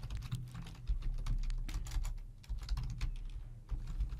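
Typing on a computer keyboard: a run of quick, irregular keystrokes with brief pauses, over a low steady hum.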